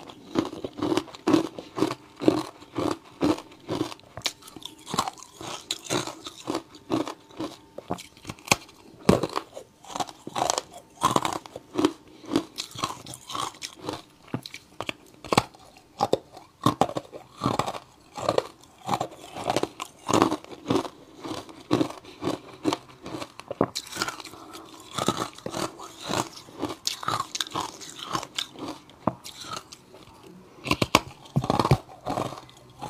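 Close-miked crunching of ice blocks coated in matcha and milk powder, bitten and chewed. The crunches come in a steady run of several sharp cracks a second.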